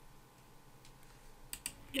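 Quiet room tone, then a quick run of about four sharp clicks in the last half second, as of computer keys or controls being pressed.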